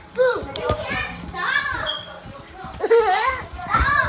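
Children's high-pitched excited cries and squeals during a chasing game, several in a row with sharp rises and falls in pitch, mixed with a couple of short knocks.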